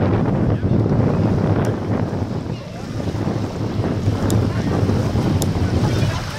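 Wind buffeting the camera microphone in gusts, with small lake waves washing onto the shore beneath it.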